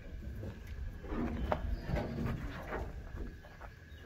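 A steel pickup truck bed being lifted and tipped over by hand: a few light knocks and clanks of the sheet metal over a low, steady rumble.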